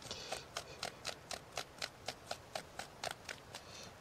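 Horse's hoof (tinder) fungus being frayed up by hand into fine tinder: a quick, even series of short, dry scraping strokes, about four a second.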